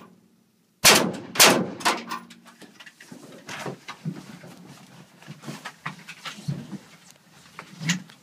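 Two loud rifle shots about half a second apart from the SCAR 16S stage rifle fired out of a van's rear door, each ringing briefly. Then scattered knocks and shuffling as the shooter moves through the van's cargo area, with a sharper knock near the end.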